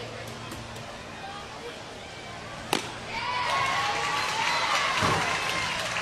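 Stadium crowd murmur, then a single sharp crack about three seconds in as a pitched baseball is struck or caught for a strike. After the crack the crowd noise swells.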